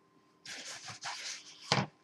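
Bare hands squeezing and rubbing crumbly pie dough against the sides of a plastic mixing bowl, a soft rustling, rubbing noise that starts about half a second in, followed by a short sharp thump near the end.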